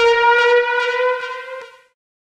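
A single synthesizer note sounding at about C5 with a bright, harmonic-rich tone. It is played back as a slide note, so its pitch bends slightly upward as it fades away over about two seconds.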